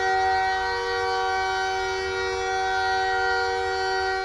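Hockey arena goal horn sounding one long steady blast, a chord of several pitches at once, cutting off just after the end.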